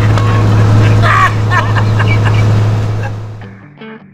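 Sennebogen 825 wheeled material handler's diesel engine running with a steady low hum, with a few brief squeals about a second in. It fades out about three and a half seconds in, and soft plucked music notes start near the end.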